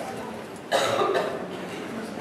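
A single short burst from a person's voice, cough-like, starting abruptly a little after a third of the way in and lasting about half a second, over a steady background.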